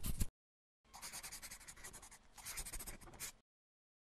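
Sound effect of writing on paper: a scratchy scribble that ends just after the start, then a longer run of scratchy pen strokes that stops about three and a half seconds in.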